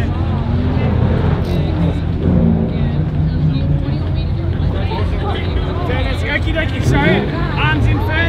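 Holden VE SS V8 engine idling steadily, with voices around the car over it.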